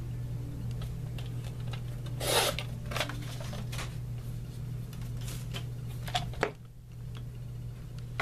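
Fiskars sliding paper trimmer cutting a sheet of cardstock in one short stroke about two seconds in, with paper rustling and light clicks of the trimmer and sheet being handled, over a steady low hum.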